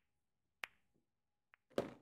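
Mostly silence broken by short clicks: one sharp click just after half a second in, a faint tick, and a short knock with a brief ring-off near the end.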